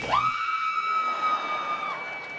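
A periodical cicada screaming: one steady, high-pitched shriek that starts just after the beginning and cuts off shortly before the end.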